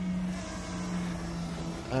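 DJI Mini 2 quadcopter hovering close by, its propellers giving a steady buzzing hum that dips slightly in pitch about halfway through.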